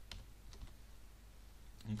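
A few separate keystrokes on a computer keyboard, typed slowly and faintly.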